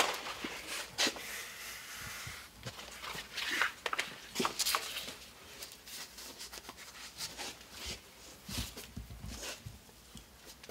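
Handling noises of a sanding belt being changed on a belt grinder that is not running: scattered clicks, knocks and rustles as the belt is fitted and the tension arm is moved, with a couple of low thumps near the end.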